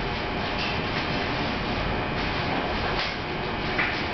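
A steady rushing noise with a low hum underneath, unchanging throughout.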